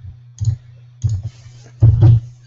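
Computer mouse clicking several times, the loudest clicks coming near the end, over a steady low hum.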